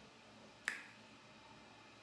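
A single short, sharp click about two-thirds of a second in, against near-silent room tone.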